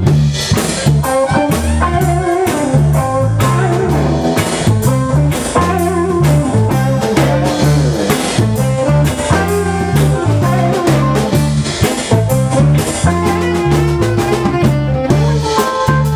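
Live blues band playing an instrumental passage: electric guitars over bass guitar and a drum kit keeping a steady beat.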